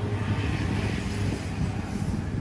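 A low, steady engine rumble, like motor traffic passing close by.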